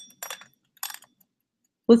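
Hen-shaped mechanical kitchen egg timer being handled and its dial turned: three short clinking clicks in the first second, then quiet.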